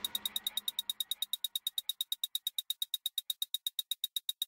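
Electronic music in a breakdown: the bass and drums drop out, leaving a fast, steady, high-pitched ticking pulse of about eight ticks a second. The tail of the previous sound fades away in the first second.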